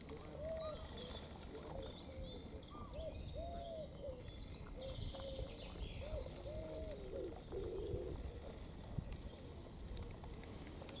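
A bird cooing: short, soft, low coos repeated in phrases, stopping a couple of seconds before the end, with faint high chirps of small birds.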